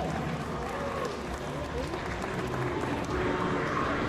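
Live concert audience applauding, with crowd voices mixed in, steady between songs.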